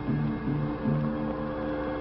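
Dramatic background score: a held chord with a few short low notes in the first second.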